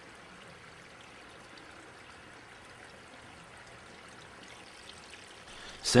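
Water trickling and splashing steadily down through a trickle-filter tower of stacked plastic crates filled with lava rock, fed by a PVC spray bar over the top tray.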